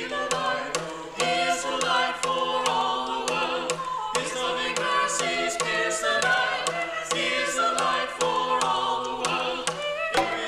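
A small group of voices singing together without instruments, with sharp percussive strikes keeping a steady beat.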